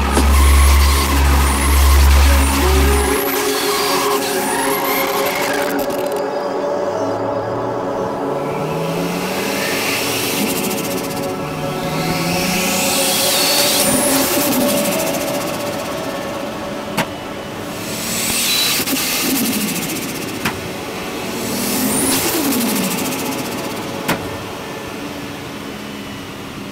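A Toyota Chaser drift car's engine revving up and dropping back again and again as it drives, with three short sharp clicks in the second half. Music with heavy bass at the start plays over it.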